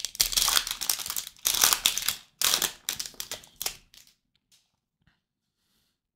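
Trading card pack wrapper being torn open and crinkled by hand, a dense crackling that stops about four seconds in.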